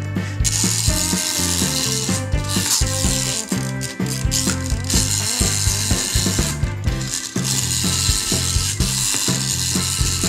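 Small plastic toy bus's geared wheels ratcheting as it is pushed along by hand, in long strokes with short breaks, over background music.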